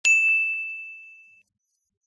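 A single bell-like ding sound effect: one sharp strike with a high ringing tone that fades out over about a second and a half.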